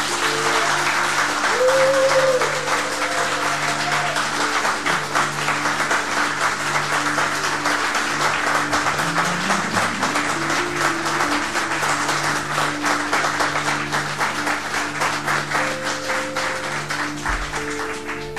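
Studio audience applauding steadily, with held tones of background music underneath.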